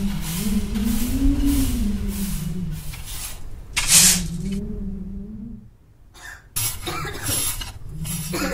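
Cartoon sound effects of chimney sweeping: a rhythmic scrubbing under a wavering low hum, then a sudden loud hiss about halfway through as a cloud of soot blows out of the chimney top. Short bursts of noise follow near the end.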